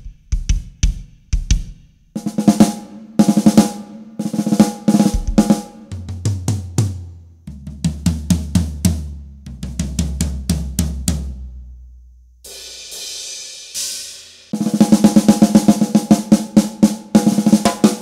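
Acoustic drum kit played one drum at a time for a gain-setting sound check: kick drum strokes, then repeated hits on a higher drum, toms stepping down in pitch, a short cymbal wash, and fast snare strokes near the end.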